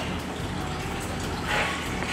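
Steady low hum under an even background hiss, with no distinct event.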